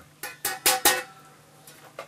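Strings of a Tokai Les Paul electric guitar struck four times in quick succession: short sharp plucks with a brief ring. A faint click near the end.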